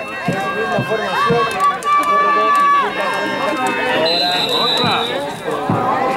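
Several voices shouting and yelling from a football team's sideline, overlapping, with drawn-out calls held for about a second.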